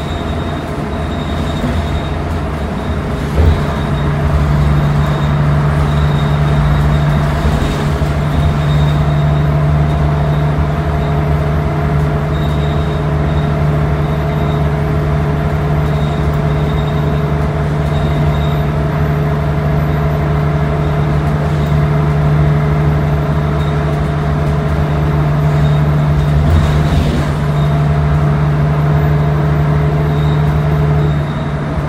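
Nova Bus LFS city bus heard from inside the cabin while it runs: a steady engine and drivetrain drone with a few held tones over road noise. A knock comes about three and a half seconds in, and the sound grows louder after it.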